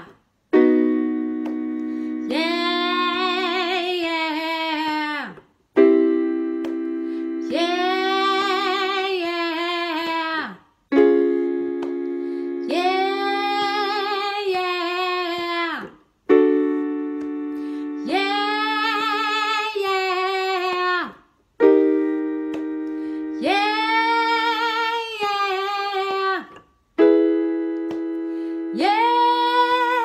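Vocal warm-up exercise: an electric keyboard plays a held chord, then a woman sings a phrase back over it, her pitch wavering and falling off at the end. The cycle repeats six times, each round a step higher in key.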